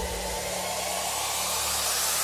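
Steady rushing hiss of car-cleaning equipment, growing a little louder.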